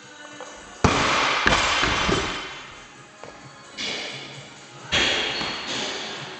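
A loaded barbell dropped from overhead onto a gym floor: a loud crash about a second in, with the plates bouncing and rattling as it dies away over about a second and a half. Two smaller knocks follow, near four and five seconds, as the bar is settled and handled on the floor.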